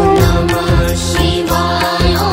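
Hindu devotional bhajan music in praise of Shiva, with a melodic line over a steady percussion beat.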